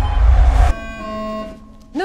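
Trailer score: a loud low rumbling swell that cuts off sharply less than a second in, followed by a held chord that fades away.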